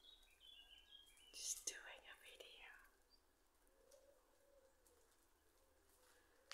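Near silence, with a brief faint whisper about a second and a half in.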